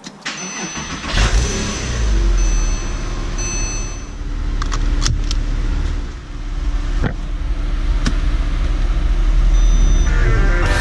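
A Porsche's engine cranks and catches about a second in, flaring up, then running on at a fast idle. Thin steady chime tones sound over it for the first few seconds. The engine sound dips briefly about six seconds in, then rises again.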